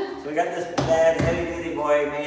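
People's voices talking, with a single sharp knock a little under a second in.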